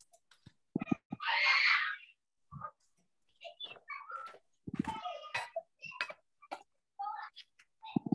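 Scattered, chopped-up fragments of voices and small clicks coming through a video-call connection, with a short breathy hiss about a second in.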